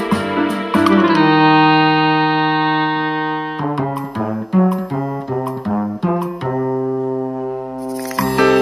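Instrumental background music played on keyboard: a long held chord, then a run of quicker separate notes about halfway through, then another held chord.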